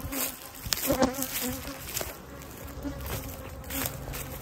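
Honey bees buzzing in flight around the hives, a steady hum, with a few faint clicks and taps.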